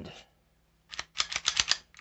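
Taurus TX22 pistol's slide being put back onto the frame and seated: a quick run of sharp metallic clicks and scrapes from about a second in, ending in a louder clack.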